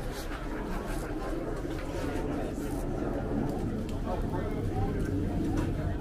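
Indistinct chatter of several voices in a small room over a low steady hum.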